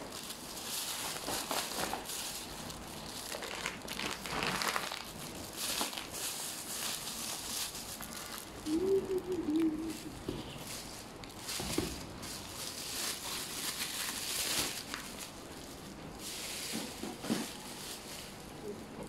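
Thin plastic carrier bag being handled, crinkling and rustling on and off. A short wavering tone sounds about halfway through.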